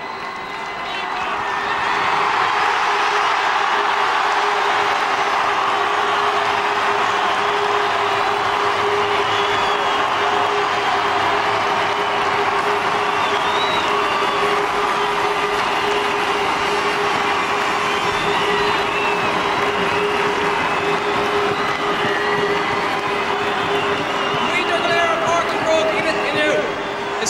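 A large stadium crowd cheering and applauding. It swells up over the first two seconds and then holds steady, with a steady tone running underneath.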